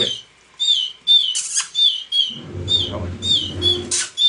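Canary chick giving a rapid series of short, high begging cheeps, about two or three a second, each dipping in pitch, as it is hand-fed rearing food from a toothpick.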